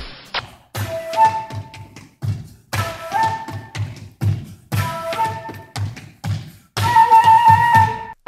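Transverse flute played in short bursts of a few notes, each phrase broken off by a brief pause, with a low thump keeping a beat beneath it. The last phrase, near the end, is the loudest and holds one high note.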